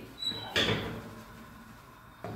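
Hinged stainless-steel dome lid of a gas pizza oven swung open: one clunk about half a second in, fading away over the next second.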